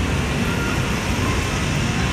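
Steady road traffic noise: a constant low rumble.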